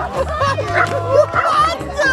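Electronic music with a steady bass beat, over which a dog barks several times in quick succession.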